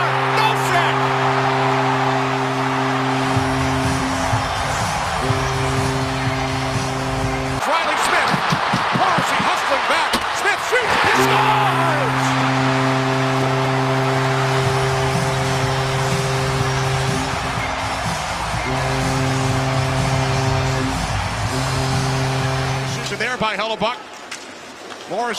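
Ice hockey arena goal horn sounding in long, steady low blasts with short breaks, over a loud cheering crowd. The horn stops for a few seconds about eight seconds in, leaving only the crowd, then sounds again in a second round of blasts that ends just before the end.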